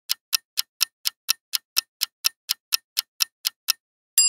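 Clock-ticking countdown timer sound effect, evenly spaced ticks at about four a second, timing the answer to a quiz question; the ticking stops just before the end.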